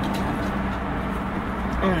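Steady noise of a car and traffic with a low hum, flat and unbroken, heard from inside a parked car.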